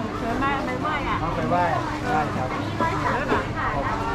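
Voices talking at a busy market food stall, several people overlapping, over a steady low hum and general background noise.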